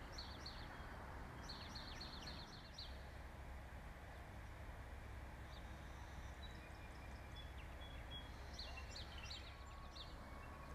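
Faint garden ambience: birds chirping in a few short runs of quick high notes, over a steady low background noise.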